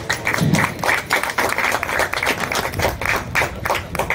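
A small crowd clapping their hands, many quick claps overlapping into applause.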